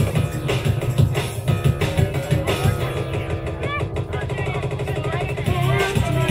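A live band playing with a steady beat, women's voices over it.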